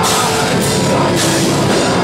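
Death metal band playing live: distorted electric guitars over a drum kit, with rapid low drum strokes and a cymbal crash about every half second, loud throughout.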